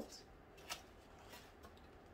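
Faint handling sounds as a folding cardboard gift box is opened: three soft clicks and rustles, about half a second apart.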